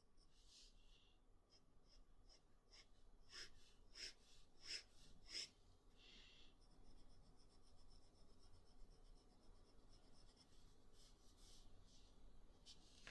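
Faint sound of an extra-fine fountain pen nib drawing short strokes on paper: a run of quick strokes roughly two-thirds of a second apart between about three and five and a half seconds in, with lighter nib sounds around them.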